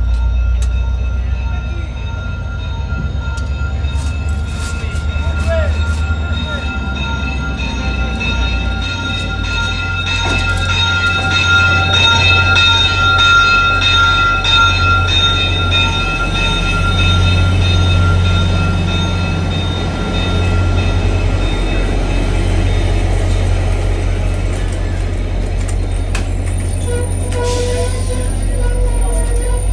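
VIA Rail F40PH-2D diesel locomotive rolling slowly past at close range, its engine running with a deep drone that is loudest about halfway through. Its Ekyrail electronic bell rings steadily over it, and near the end stainless-steel passenger cars roll by.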